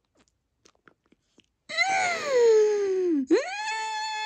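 A woman's playful wordless wail: a high note sliding steadily down for about a second and a half, then a quick rise into a high held note near the end.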